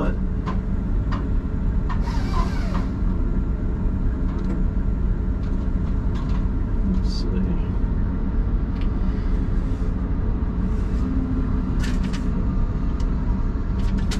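Diesel engine of a John Deere knuckleboom log loader idling steadily, heard from inside the cab, with a short hiss about two seconds in and a few light clicks.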